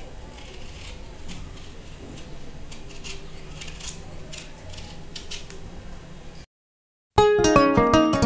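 Small knife paring the skin off a red-skinned potato: a run of short scraping strokes. Near the end the sound cuts out briefly, and then louder plucked acoustic guitar music starts.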